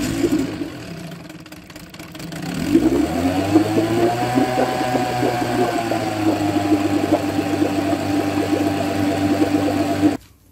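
Old Evinrude two-stroke outboard motor, its carburetor freshly cleaned, pull-started by its cord. It catches about two and a half seconds in and revs up. It then settles into a steady run in a test tank of water.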